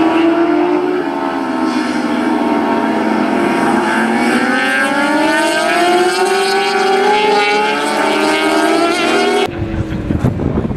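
Several 600cc race motorcycles running together through a corner, their engine notes overlapping. The notes sink a little, then rise from about four seconds in as the bikes accelerate out. The sound changes suddenly to a rougher, noisier one just before the end.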